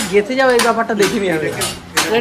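Voices talking over a series of sharp, irregular clacks from a working handloom.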